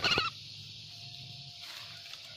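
A short, high bird call right at the start, over a steady high-pitched insect buzz.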